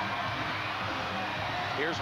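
Steady crowd noise from a packed indoor arena, many voices blended together.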